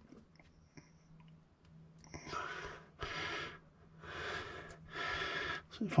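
A man breathing heavily close to the microphone, with four noisy breaths in the second half after about two seconds of near quiet.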